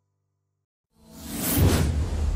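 Silence, then about a second in a whoosh sound effect swells up fast and loud, opening the video's animated outro.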